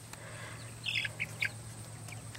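Cornish Cross chicks peeping: a few short, high peeps clustered about a second in.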